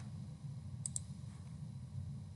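Two quick, light clicks close together about a second in, over a faint steady low hum.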